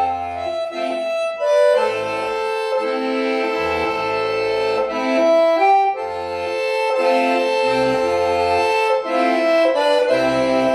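Solo piano accordion playing: a sustained melody on the right-hand keyboard over rhythmic left-hand bass notes and chords, with a short break in the phrase about six seconds in.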